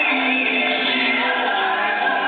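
A solo voice singing long held, sliding notes into a microphone over musical accompaniment, sounding dull with no high end.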